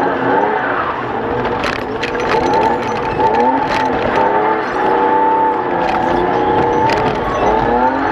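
Race car engine heard from inside the cabin, its revs rising and falling over and over as the throttle is worked through the corners, with tyre noise underneath and a few sharp knocks.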